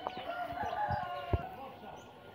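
A rooster crowing faintly, one drawn-out call of about a second, with a couple of soft knocks.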